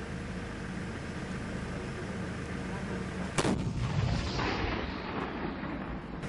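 A Panhard AML armoured car's gun fires a single shot about halfway through, a sharp crack followed by about two seconds of rolling rumble across the hills, over a steady low engine hum.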